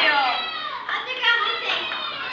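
Several high-pitched young voices chattering and calling out over one another, the sound of children playing, with one sharp click at the very start.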